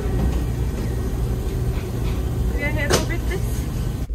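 Steady low drone of a car ferry's engines heard from inside the ship, under background voices, with a sharp clatter about three seconds in.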